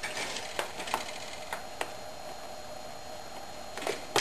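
A few faint metallic ticks over a steady low hiss, from the hot aluminium can pot and alcohol stove just after the flame has burned out.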